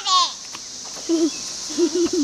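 A young child's high-pitched squeal right at the start, falling in pitch, then a couple of short, low voice sounds later on, over a steady high hiss.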